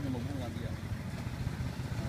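A steady low engine drone, a small motor running without change, with a voice briefly at the start.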